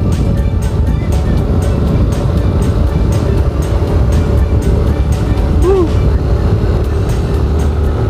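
Steady low rumble of a moving vehicle, with wind on the microphone, under background music that has a singing voice; one short sung note rises and falls a little before six seconds in.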